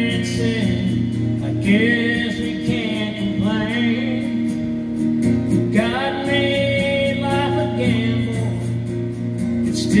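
A man singing a country song into a microphone, accompanied by his own strummed acoustic guitar.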